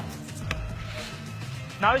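A football kicked once, a single soft thud about half a second in.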